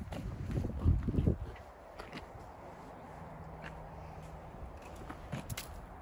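Footsteps on a wet paved path: a run of heavy low thuds in the first second and a half, then quieter walking with a few scattered light clicks.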